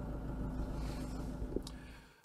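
Safari vehicle's engine running, heard from inside the cabin as a steady low rumble with a faint steady hum, fading out near the end.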